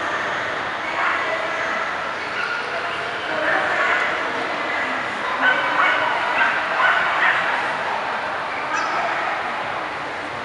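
Dogs barking over a background of crowd chatter, with a run of several sharper barks a little past the middle.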